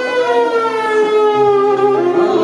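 Violin playing an Arabic taqsim: one long bowed note that slides slowly down in pitch, over a steady low drone.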